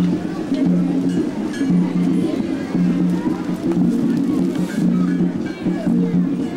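Amplified music with a bass note repeating about once a second, with voices over it.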